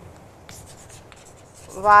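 Chalk writing on a chalkboard: short, faint scratching strokes as letters are written. Near the end a woman's voice begins, louder than the chalk, starting to say "wata…".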